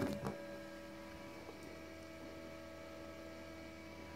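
Steady low electrical hum, several faint steady tones, from the running Blitz Norma 72-egg incubator, with a brief tap just after it begins.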